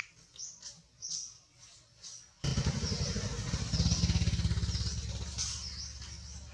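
Short high chirps, then about two and a half seconds in a loud, low engine rumble starts suddenly and carries on, with chirps still heard above it.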